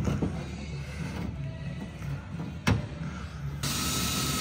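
A few handling clicks and a sharp knock, then a Ryobi cordless drill runs steadily for about a second near the end, driving into the ute's tray side wall.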